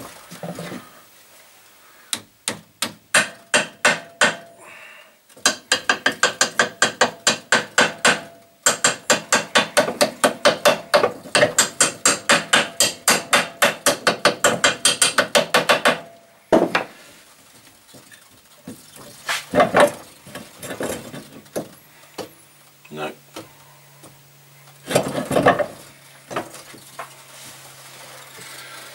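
A copper hammer tapping the drill motor's steel pivot pin through its mounting holes. It starts with a few separate blows, then runs into quick light taps, about four a second, for some ten seconds. After that come a few scattered knocks.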